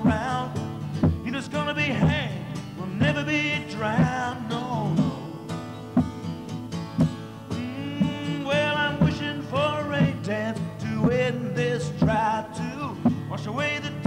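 Solo steel-string acoustic guitar strummed in a steady rhythm, with a man's voice carrying a melody over it.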